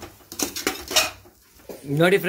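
Steel ladle clinking and scraping against the aluminium pressure cooker while the vegetable masala is stirred: several sharp clinks, loudest about a second in.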